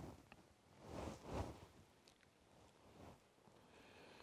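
Near silence with faint rustling and handling noises as a paper folder is set down and a book is picked up and opened, with a couple of soft swells about a second in.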